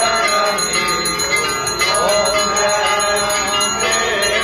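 Temple bells rung rapidly and continuously during an aarti, giving a dense, unbroken ringing with many strokes each second.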